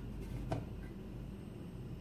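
Quiet room tone with a low steady hum and one faint tap about half a second in, as the glass lid settles on the frying pan.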